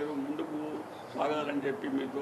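A man talking into the microphones in short phrases: speech only.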